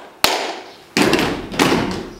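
Body-percussion beats from a group rhythm exercise, handclaps and foot stamps on a hard floor. There are three sharp strikes about two-thirds of a second apart, each ringing on in an echoing room.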